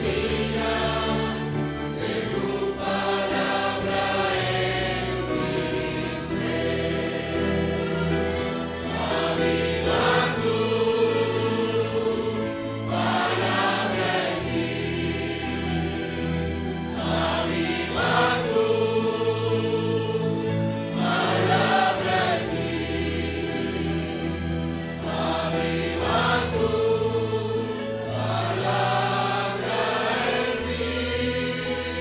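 A congregation singing a Spanish hymn chorus together, with instrumental accompaniment and a bass line moving in steps.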